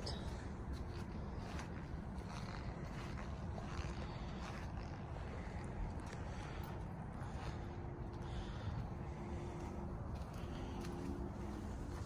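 Steady low outdoor background rumble with faint rustles and scrapes from the handheld phone, and a faint steady hum in the second half.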